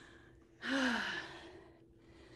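A woman's breathy sigh about half a second in: one exhale with a falling voiced tone, fading over about a second, as she breathes out after the exertion of a movement game.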